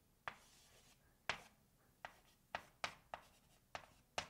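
Chalk writing on a blackboard: a run of short, sharp chalk taps with faint scratching between them, spaced out at first and coming quicker in the second half.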